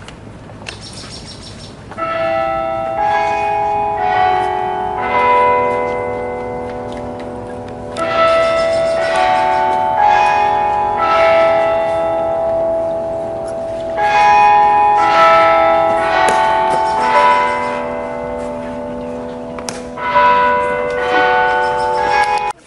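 A melody of struck, ringing bell tones starting about two seconds in, played in phrases of several notes that begin about every six seconds and ring on over one another.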